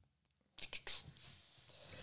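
A pause in conversation: near silence at first, then faint breathy voice sounds from about half a second in.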